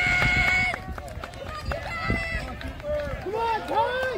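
Spectators shouting encouragement to passing runners: one long held call at the start, then shorter shouted calls from several voices.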